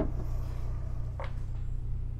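Steady low electrical hum, with a brief light scrape about a second in as the motor's stator is handled.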